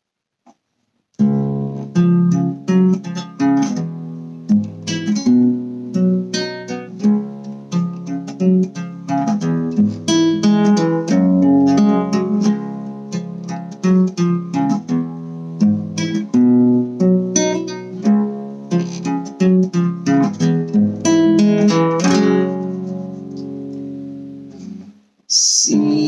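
Nylon-string classical guitar playing a solo introduction of picked notes and strummed chords. It starts about a second in and ends on a chord that rings out and fades near the end, followed by a brief hiss.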